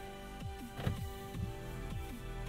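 Electronic music playing through a 2020 Mazda CX-5's 10-speaker Bose sound system, heard from the driver's seat inside the cabin. Over sustained synth tones, deep bass hits drop in pitch about twice a second.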